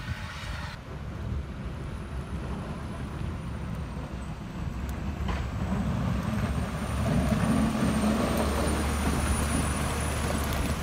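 Snowplow truck's engine running close by as its front blade pushes snow, a steady low rumble that grows louder about seven seconds in.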